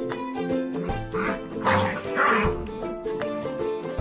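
Background music with a steady run of notes. About a second in, German Shepherd puppies play-fighting give three short barks in quick succession.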